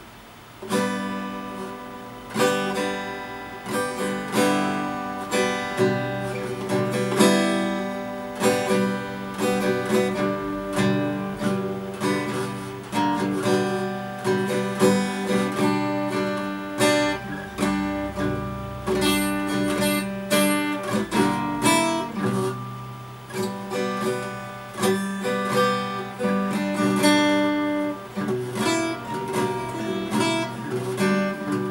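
Steel-string acoustic guitar strummed in chords, starting about a second in and going on as a run of strums with chord changes.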